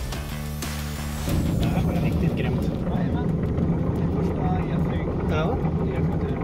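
Guitar music that cuts off about a second in. It gives way to the steady, louder cabin noise of a Pipistrel Velis Electro, a battery-powered electric light aircraft, with voices over it.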